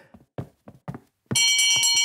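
A few soft knocks, then about a second in a brass hand bell is rung rapidly, its ringing tones held under quick repeated strikes.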